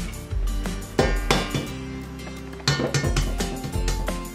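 An egg tapped against the rim of a stainless steel mixing bowl, giving a few sharp clinks, over background music.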